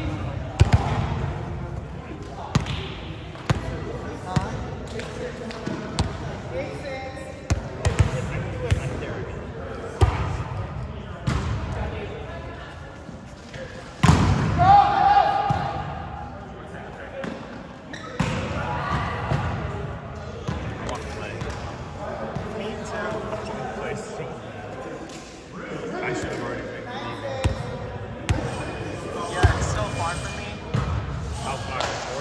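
Indoor volleyball play in a gymnasium: repeated sharp slaps of the ball being struck and hitting the hard floor, echoing in the hall. Players' voices call out between hits, loudest about halfway through.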